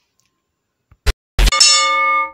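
A short click about a second in, then a struck bell-like ding that rings on with several steady tones for about a second: the click-and-bell sound effect of a subscribe-button animation.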